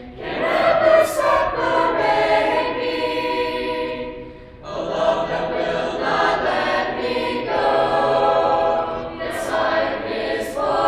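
Mixed youth chorus of 7th- to 12th-grade voices singing a cappella in sustained chords, pausing briefly about four seconds in before the next phrase.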